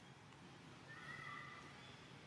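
Near silence with one faint, short animal call a little under a second in: two steady high tones held for under a second.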